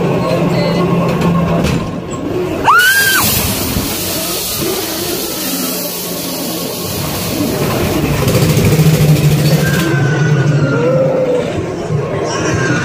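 Ghost train dark ride: the ride's spooky sound effects and music over a low steady rumble. About three seconds in comes a sudden loud effect with a short rising shriek, and then a hiss that lasts several seconds.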